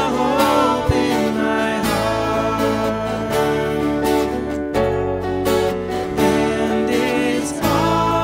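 A contemporary worship song played on acoustic guitar with singing, the voices clearest in the first second or so before a steadier held passage.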